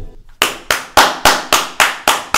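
Quick, evenly spaced hand claps starting about half a second in, roughly four a second, each sharp and loud.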